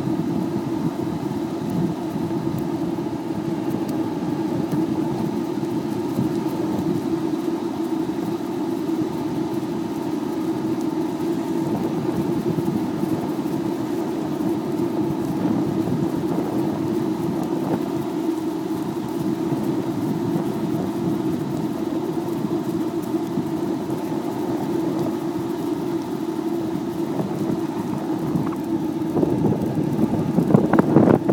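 Skateboard wheels rolling steadily over pavement: a continuous rumble with a steady hum, growing louder and rougher near the end.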